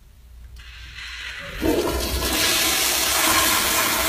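Wall-mounted flush-valve toilet flushing: a hiss builds from about half a second in, then a loud rush of water starts about a second and a half in and keeps going.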